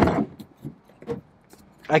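A few light clicks and rattles from a truck-bed storage drawer and its contents being handled.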